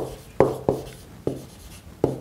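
Stylus tapping and scraping on an interactive whiteboard screen during handwriting: four quick strokes, each sharp at the start and quickly fading, in the first second and a half.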